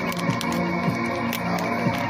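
Hip-hop beat playing without vocals: sustained low bass notes under a regular pattern of sharp percussion ticks.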